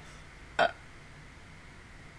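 A single short vocal sound from a woman, one clipped syllable about half a second in, then only faint steady room hum.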